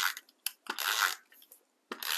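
Paper pieces handled and pressed together on a table: three short rasping strokes, the last at the very end.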